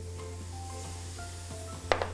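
Oil and chopped onion sizzling lightly in a hot frying pan as the oil is poured in, under soft background music, with one sharp knock near the end.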